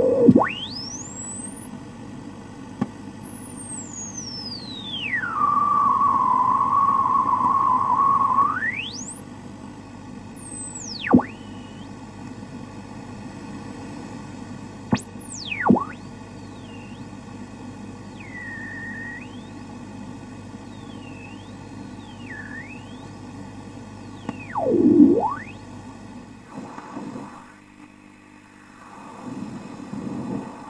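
Radio static with interference whistles that slide up and down in pitch over a steady hiss and hum. The loudest part is a steady whistle held for about three seconds early on, and a quick sweep down and back up comes near the end.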